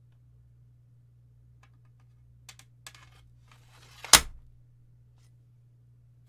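A replica katana being picked up and handled, with a few faint clicks and rustles and then one sharp knock about four seconds in. A low steady hum runs underneath.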